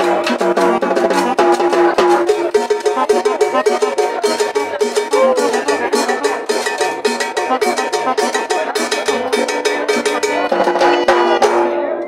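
Live dance band playing: hand drums and a drum kit keep a busy, steady rhythm under held pitched instrument notes.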